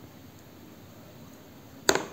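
Quiet room tone, then near the end one loud, sharp double click of metal feeding tweezers knocking against a clear plastic tub.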